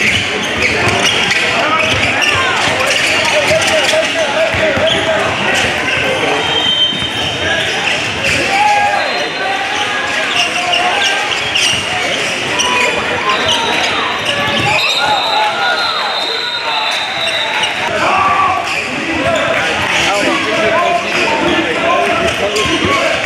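Basketball being dribbled on a hardwood gym floor during a game, with voices of players and onlookers echoing in a large hall.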